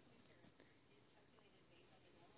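Near silence: faint room tone with a steady faint hiss.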